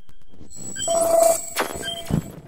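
Electronic glitch sound effect for an animated title card: static-like crackle with a steady electronic tone that comes in a little under a second in, plus a quick rising sweep and short beeps.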